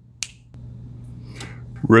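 A single finger snap, one sharp click about a quarter of a second in, over a steady low hum.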